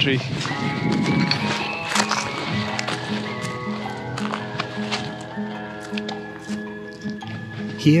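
Background music: steady held tones over a low note that pulses about twice a second.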